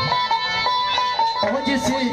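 Traditional folk music: a plucked-string instrument plays a melody of short, repeated notes. About a second and a half in, a lower, wavering line joins it.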